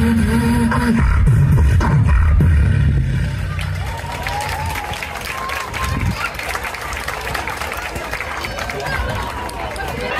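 Beatboxing through outdoor PA speakers, a held bass hum and heavy bass beats, for the first three or four seconds. It then drops back to crowd noise, with children's voices and some clapping.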